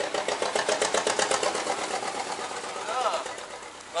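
Small boat's engine chugging with a rapid, even beat that fades away over the first few seconds. A voice is heard briefly near the end.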